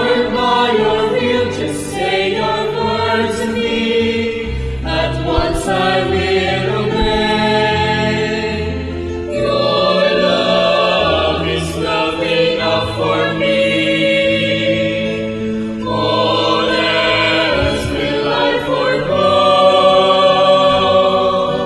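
A choir singing the offertory hymn, with sustained bass notes from an accompanying instrument that change every second or two.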